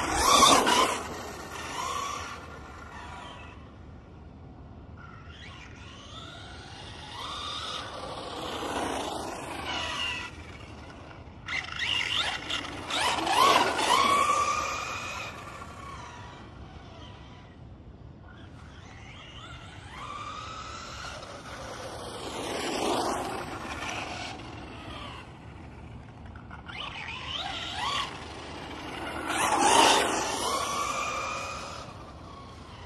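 Helion Invictus 4x4 electric RC car running on a 3S battery, its motor whine sweeping up and down in pitch as it speeds past again and again, with quieter gaps between the passes.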